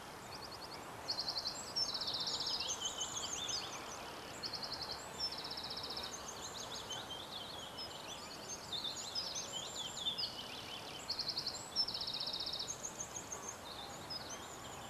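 Several birds singing and calling outdoors: fast high trills and short chirps follow one another without pause, over a steady background hiss.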